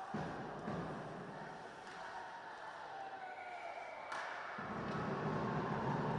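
Faint ice hockey rink ambience: play and the crowd in the arena, heard through the broadcast. It gets louder from about four and a half seconds in, around a goal.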